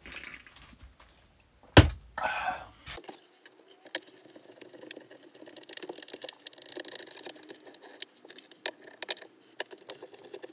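A single sharp knock about two seconds in, then scattered light clicks and scraping as screws are driven by hand into the wooden shoe rack frame.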